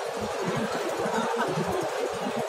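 Large crowd of spectators talking all at once: a steady din of many overlapping voices with no single speaker standing out.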